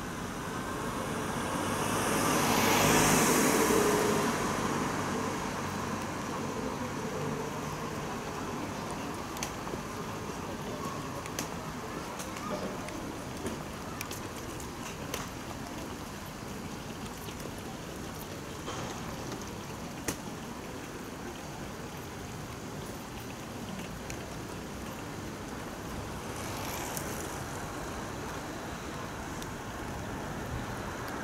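Street ambience with a car passing by: its sound rises, peaks about three seconds in and fades, and a second, fainter pass comes near the end. Between them there is a steady hiss with scattered light ticks.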